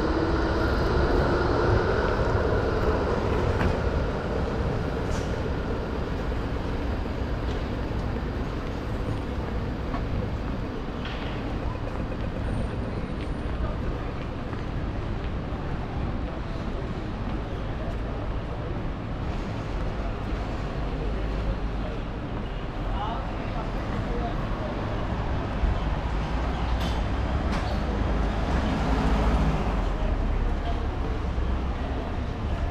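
City street ambience with a steady low traffic rumble. Over the first few seconds, an electric tram's motor whine rises in pitch and fades as the tram pulls away.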